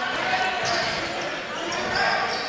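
A basketball dribbling on a hardwood court during live play, over the steady murmur of the crowd in a large hall.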